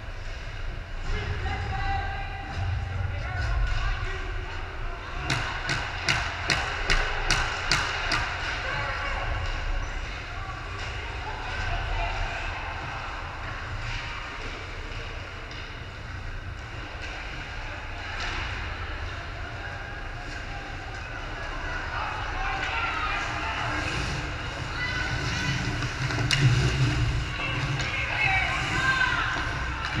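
Ice hockey game in an echoing indoor rink: voices of players and spectators over the hollow rink ambience. About five seconds in comes a quick run of roughly ten sharp knocks, and the voices grow louder and busier near the end.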